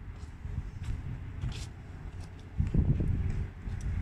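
Outdoor ambience with a gusty low rumble, typical of wind buffeting the microphone, swelling about three seconds in, and a few faint light clicks.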